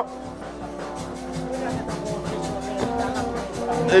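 Music with held notes and a steady beat, playing at a moderate level.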